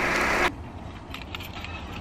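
Outdoor background noise with an even hiss that drops abruptly to a quieter background with a few faint ticks about half a second in.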